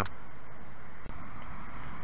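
Steady rushing noise of wind on the microphone, with a single short click about halfway through.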